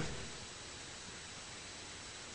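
Steady faint hiss of recording noise, with no distinct sound event in it.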